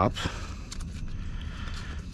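Handling noise from a nylon seat-harness strap being threaded through a metal buckle: a faint rustle of webbing with a few light clicks of the buckle.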